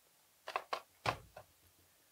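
Handling noise from a camcorder being worked in the hands: four faint, short clicks and taps spread over about a second.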